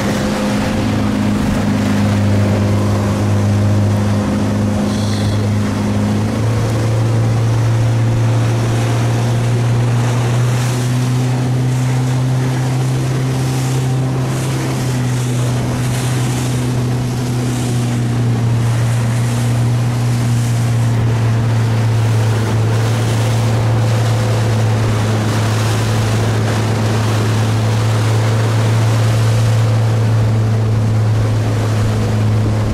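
Motorboat engine running steadily, with wind and rushing water around it; the engine note steps up slightly about six seconds in.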